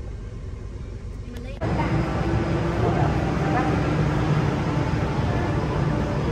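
Low, steady rumble of a car cabin on the move. About one and a half seconds in it cuts off abruptly and is replaced by louder, even background noise with faint tones.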